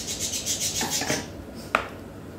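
Rubbing and rustling of boiled cabbage leaves being handled in a plastic colander, lasting about a second, followed by a single sharp click near the end.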